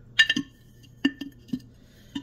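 A measuring cup clinking against a jar as it scoops vital wheat gluten flour: one sharp clink with a brief ring near the start, then several softer knocks.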